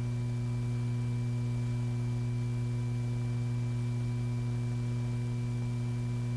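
Steady electrical hum on an old film soundtrack: a low tone with several fainter, higher steady tones above it, unchanging throughout.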